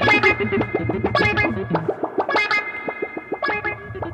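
Instrumental psychedelic rock: electric guitar playing over bass and drums, with sharp drum and cymbal hits in a steady beat.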